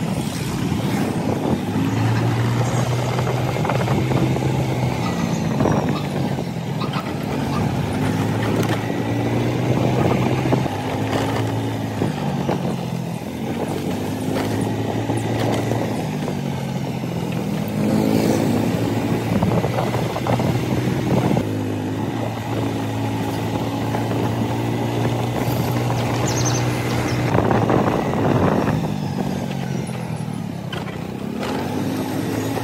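Small motor scooter engine running under way, its pitch rising and falling repeatedly as the rider speeds up and slows down.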